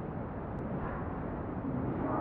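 Boosted voice-recorder playback: a steady hiss and low rumble with a faint, indistinct sound in the noise, offered as a possible spirit voice (EVP).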